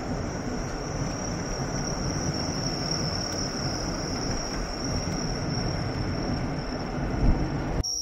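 Steady road and wind noise of a moving car, with a low rumble, and a continuous high insect trill, crickets, running over it; it cuts off abruptly just before the end.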